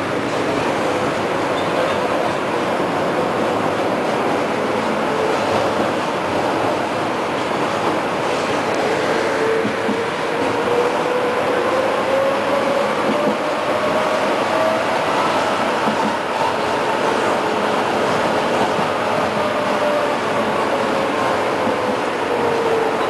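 Tram running, heard from inside the passenger cabin: a steady rumble of wheels and body, with a motor whine that climbs in pitch as the tram picks up speed and sinks again in the second half.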